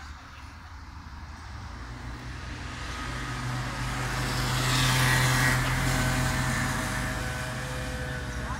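A motor vehicle driving past on the street, its engine hum and tyre noise growing louder to a peak about five seconds in, then fading as it moves away.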